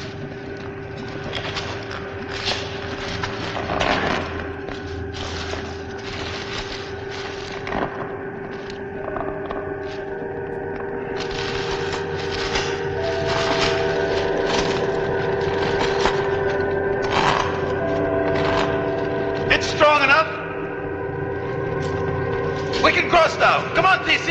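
Film soundtrack: an eerie music score of long held chords that shift a few times, over a rumbling noise bed, with a few sharp hits.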